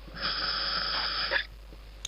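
A diver breathing through a scuba regulator: one hissing breath lasting about a second.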